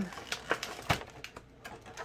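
A few light, scattered clicks and taps from handling the collection box's packaging and cards.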